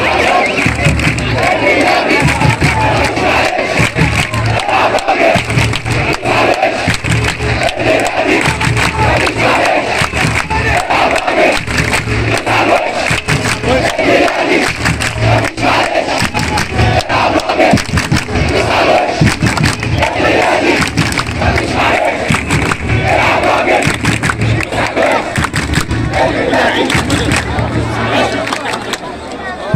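Large crowd of football supporters chanting together in a steady rhythm, their voices swelling about once a second.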